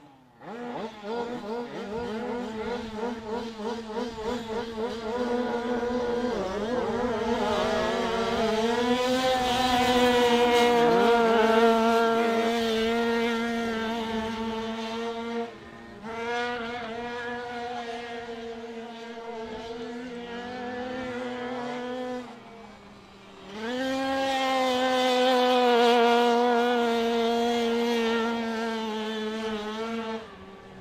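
Four 85cc speedway motorcycles starting a heat and racing: the engines rise together off the start about half a second in. Then comes a steady high buzz that swells and bends in pitch as the bikes are throttled around the dirt oval, dropping away sharply twice, about halfway through and again a few seconds later.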